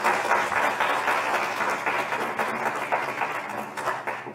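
Audience applauding, a dense patter of many hands that begins to die down near the end.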